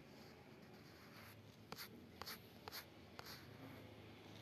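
Near silence: room tone with a few faint, short ticks and scratches in the second half.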